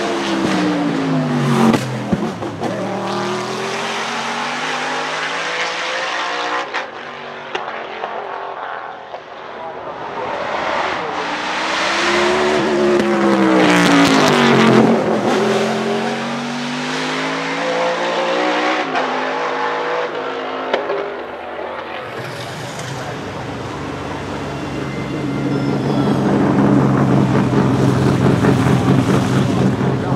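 A 750 hp Ford V8 in a 1995 Roush Mustang GTS-1 Trans-Am race car, accelerating hard and changing gear so that its pitch climbs and drops several times. It is loudest about halfway through, then settles to a lower, steady run near the end.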